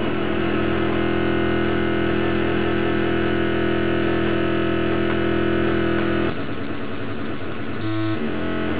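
Live experimental electronic music: a dense drone of many steady, held tones, which breaks off suddenly about six seconds in and gives way to a thinner, wavering texture.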